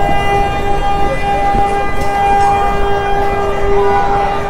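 A vehicle horn blaring continuously on one steady, unwavering pitch, with fainter rising and falling tones beneath it.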